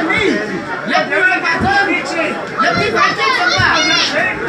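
Several voices talking and calling out over one another, in a room with some echo.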